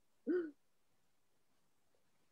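A woman's short hummed "mm" about a quarter second in, its pitch rising and falling, then near silence.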